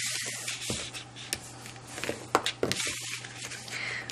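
Sheet of A4 cardstock rustling and sliding as hands turn it round on a mat, with a few light taps.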